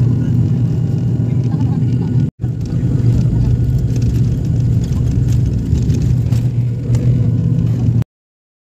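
Turboprop airliner's engines running with a steady low droning hum, heard from inside the passenger cabin as the aircraft moves along the runway. The sound cuts out for an instant about two seconds in.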